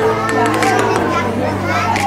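Many children's voices chattering and calling out at once, over a steady low hum.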